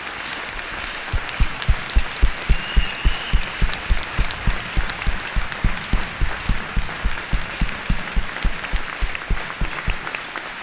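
A large crowd applauding in an ice arena. From about a second in, one person claps close to the microphone, a steady run of about three loud claps a second that stands out over the crowd.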